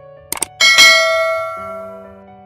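A quick double mouse-click sound effect, then a bright bell ding that rings out and fades over about a second: the click-and-bell sound of a YouTube subscribe animation, over quiet background music.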